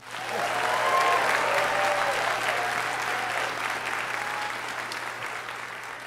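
A large theatre audience applauding, with a few cheers in the first half. The clapping starts suddenly and eases off toward the end.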